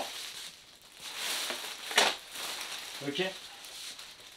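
Plastic bin bag crinkling as it is handled, with one sharp knock about two seconds in.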